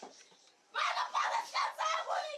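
Chicken clucking in a quick run of short, loud calls that start about three-quarters of a second in.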